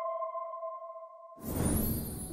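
Fading tail of a ringing electronic chime from a logo jingle, a few tones sounding together. About one and a half seconds in, the chime cuts off and a swoosh sound effect begins.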